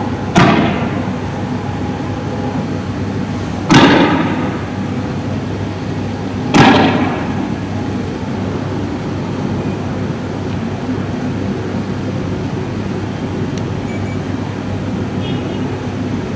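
Three loud bangs about three seconds apart, each dying away in an echo, over a steady background noise.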